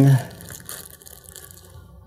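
Faint crinkling and rustling of a thin sealed plastic bag being turned over in the hands, a few soft crackles in the first second and then only a low rustle.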